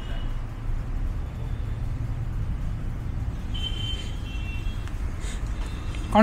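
Steady low background rumble, with a brief faint high tone a little past halfway.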